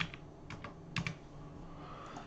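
A few sharp clicks of computer keys pressed as Blender shortcuts, the loudest right at the start and another about a second in.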